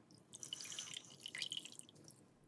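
Soaked floral foam squeezed by hand over a basin of water: water trickles and drips out of the foam with a fine crackle. It starts about a third of a second in and lasts about a second and a half.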